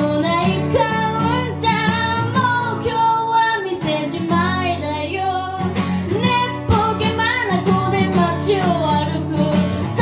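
A singer's voice with a strummed acoustic guitar, a song performed live.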